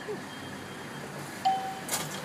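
Bank ATM about to dispense cash: a short, steady beep about one and a half seconds in, then a sharp click near the end as the cash slot opens.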